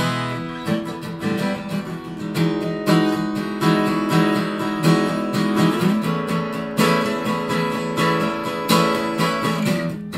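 Takamine 2010 LTD Miyabi cutaway dreadnought acoustic guitar, with a Sitka spruce top, Indian rosewood back and sides and Elixir light strings, played solo. A held chord rings out at the start, then a steady flow of fingerpicked notes and strums follows.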